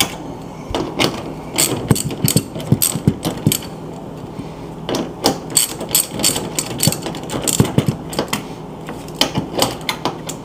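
Socket ratchet clicking in quick runs of strokes while a refrigerator door hinge bolt is loosened, with a few short pauses between runs.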